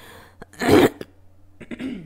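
A single short, loud cough from the lecturer, about three-quarters of a second in.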